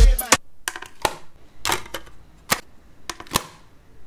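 Dancehall music cuts off abruptly, then a handful of sharp, separate plastic clicks and knocks, about six in four seconds, as a portable boombox's buttons and CD lid are worked and a disc is taken out.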